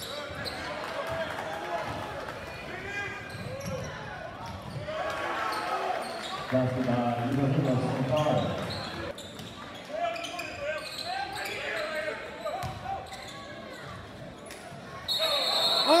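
Basketball game in a large gym: spectators talking nearby while the ball is dribbled on the hardwood court, with scattered knocks. A high, steady whistle blast starts about a second before the end.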